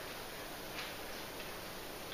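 Mexican lager poured slowly from a can into a tall pilsner glass over crushed ice: a faint, steady fizz of carbonation.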